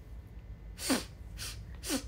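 A woman sneezing twice, about a second apart. Each sneeze is a sharp burst of breath with a falling voiced tail.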